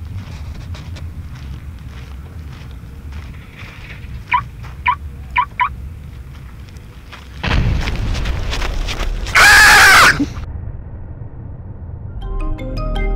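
An explosion-like blast that rises abruptly past the middle and peaks in a very loud, distorted burst near the end before cutting off sharply. Before it there is a faint low rumble and four short high chirps.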